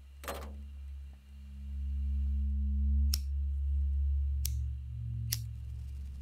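A cigarette lighter flicked three times, sharp separate clicks over the second half, over a low steady drone with held tones. A short falling swish sounds just after the start.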